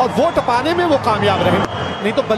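Speech: a voice talking.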